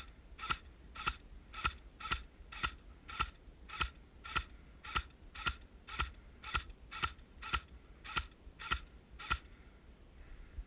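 AK-style airsoft rifle firing single shots at a steady pace, just under two sharp clicks a second, stopping shortly before the end.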